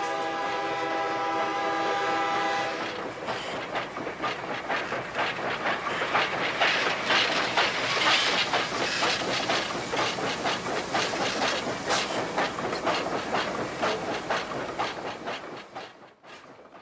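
A train horn holds a steady chord for about the first three seconds. Then a passenger train runs past with a rapid, continuous clatter of wheels over the rails, dying away right at the end.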